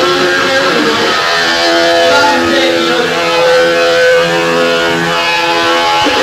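Hardcore punk band playing live, led by a loud, steady distorted electric guitar. The sound comes from an old, worn tape dub of the gig.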